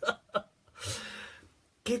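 A man laughing: two short bursts of laughter, then a long breathy out-breath of laughter and a brief pause.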